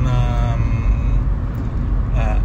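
Steady low rumble of a car's engine and road noise heard inside the cabin. Near the start there is a short drawn-out hesitation sound from a man's voice.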